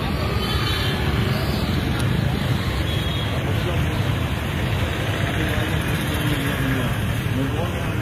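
Steady street noise of motor traffic with indistinct voices of people talking.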